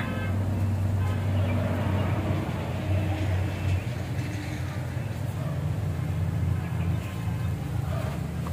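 A motor running with a steady low drone under some background noise.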